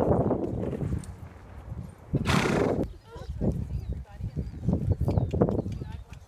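Horses walking on arena dirt, with uneven hoof thuds, and one loud breathy burst a little over two seconds in.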